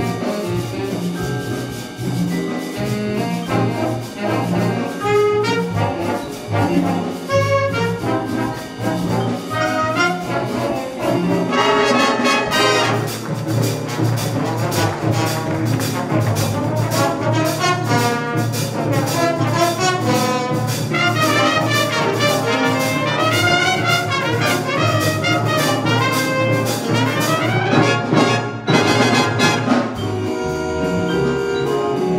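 A school big-band jazz ensemble playing live: saxophones, trumpets and trombones over piano, guitar and drum kit. About twelve seconds in the band grows fuller and busier, with steady cymbal time.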